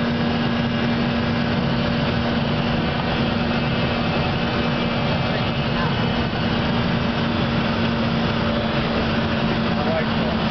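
Steady cabin noise inside a Cessna Citation business jet in flight: a continuous rushing drone with a steady low hum running through it.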